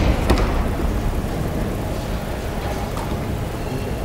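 A sharp thud just after the start as a thrown aikido partner lands on the tatami mat, then a steady low rumble of arena ambience.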